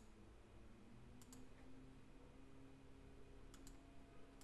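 Near silence with faint computer mouse clicks: one at the start, then a quick double click about a second in and another about three and a half seconds in, over a faint steady hum.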